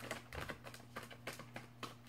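A deck of tarot cards being shuffled by hand: a quick, uneven run of soft card clicks and slaps, several a second, over a faint steady hum.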